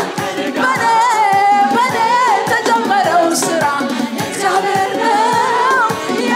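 A worship group of singers, led by a woman, singing a song together over a steady beat of about two strokes a second.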